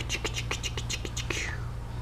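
A woman making a quick run of whispered, breathy sounds, about eight a second, that stops about a second and a half in.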